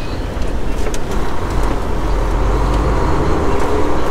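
Semi-truck diesel engine heard from inside the cab as the truck rolls away, a steady low rumble with a slowly rising engine note in the second half as it picks up speed.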